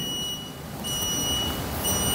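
A high-pitched electronic tone with overtones sounds on and off in three stretches over a steady low hiss.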